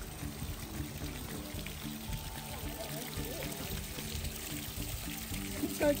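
Water from a mineral hot spring trickling and splashing down a crusted rock mound in a steady pour, with faint background music.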